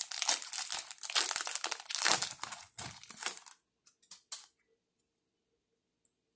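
Wrapper of an Upper Deck Goodwin Champions trading card pack being torn open and crinkled: dense crackling rustle for about three and a half seconds, then a few faint ticks as the cards are handled.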